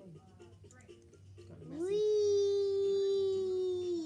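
A child's voice holding one long, loud wailing note for about two seconds. It glides up into the note and drops away at the end, after faint background voices.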